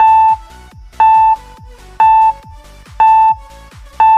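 Quiz countdown timer beeping once a second: a short, loud, steady-pitched electronic beep with each tick of the count, over quieter electronic background music with a beat.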